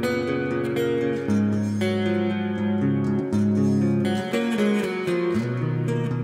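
Electric guitar on a clean tone played through its neck pickup, set at an adjusted height: a picked clean riff of ringing, overlapping notes that change about every second.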